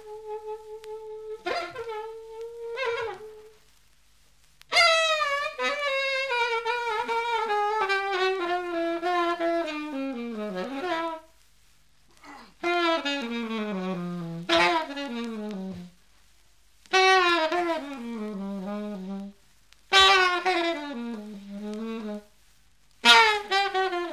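Grafton plastic alto saxophone played solo: a held note, a few short notes, then a run of five falling phrases with a wide, wobbling vibrato, each sliding down to a low note before a short pause.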